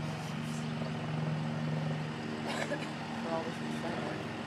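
Steady low hum of idling engines from armored police vehicles and trucks.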